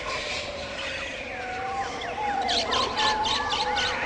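Jungle ambience of many bird calls, chirps and whistles that rise and fall in pitch. The calls grow busier about halfway through, with rapid chattering calls joining in.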